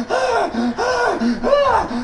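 A voice making a rhythmic series of gasping cries, about two to three a second, each rising and falling in pitch.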